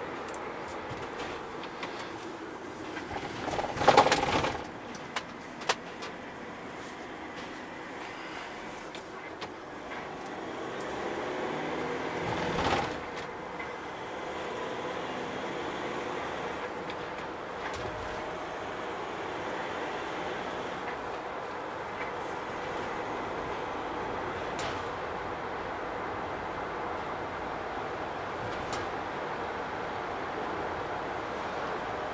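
In-cab sound of a MAN TGE van's 2.0 four-cylinder diesel on the move: steady engine and road noise, with a sharp loud thump about four seconds in. The noise swells from about ten seconds in, peaks near thirteen seconds, then settles.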